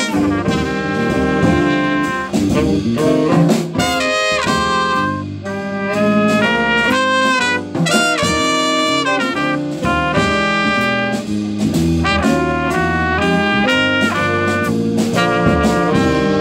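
Small jazz combo playing live: a trumpet and two saxophones play the tune together over piano and a drum kit keeping time.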